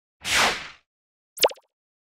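Animated-graphic sound effects: a short whoosh sweeping downward, then about a second later a quick pop that drops sharply in pitch.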